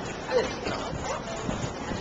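Wind buffeting the microphone, with indistinct voices of people nearby and a brief vocal sound about half a second in.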